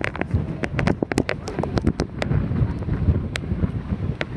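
Wind buffeting a phone microphone: a low rumble broken by many irregular crackles.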